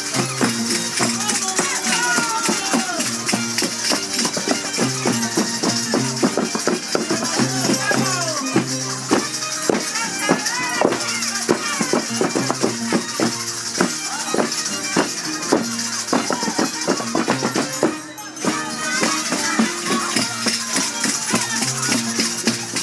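Live Andean negritos dance music: a violin playing the melody over a plucked Andean harp, with a steady high rattling sound alongside. The music drops briefly about 18 seconds in.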